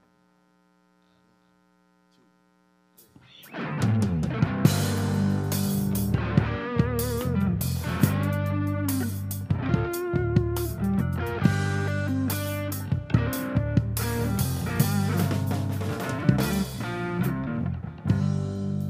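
Faint amplifier hum for about three seconds, then an electric blues band comes in together: electric guitar lead with wavering bent notes over bass guitar and drum kit.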